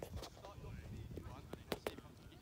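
Distant, indistinct voices of young players talking over a low rumble, with two sharp clicks in quick succession near the end.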